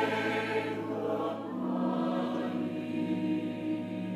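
Church choir singing slow, held chords, moving to a new chord about a second and a half in.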